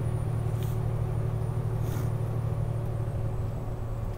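Steady engine and road noise of a vehicle cruising at highway speed, heard from inside the cabin: an even low hum with no change in pitch or level.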